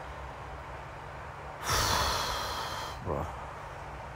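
A man's long, loud breath out into the microphone, a sigh lasting over a second that fades away, followed by a spoken 'bro'.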